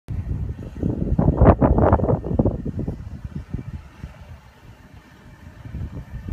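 Wind buffeting the phone's microphone in gusts, heaviest in the first three seconds and easing off after that.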